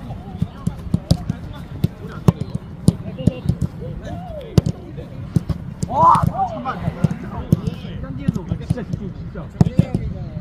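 Footballs being kicked and passed on grass by many players at once: a string of sharp thuds at irregular intervals, several a second, with players' voices, including a loud call about six seconds in.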